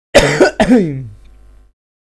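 A man clearing his throat with two loud coughs in quick succession, the second trailing off lower in pitch.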